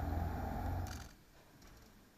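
Outdoor ambience with a low rumble, cut off abruptly with a click about a second in. Quiet room tone follows.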